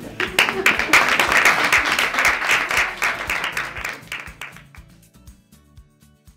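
Audience applauding with many irregular claps, music playing under it; the applause fades away about four to five seconds in, leaving the music.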